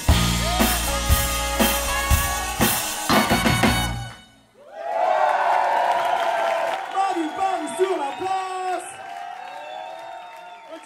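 Funk band playing live with a full drum kit, stopping abruptly about four seconds in on the song's final hit. After a brief gap the audience cheers and whoops.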